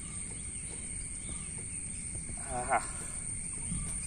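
Quiet outdoor background: a steady high-pitched drone over a low rumble, with one short rising pitched call about two and a half seconds in.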